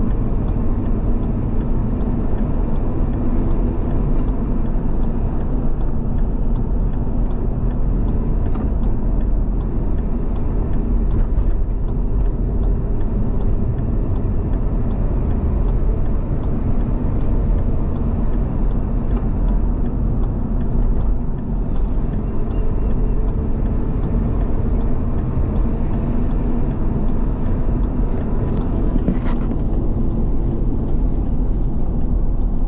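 Steady low rumble of a car driving on an open road, its engine and tyre noise heard from inside the cabin.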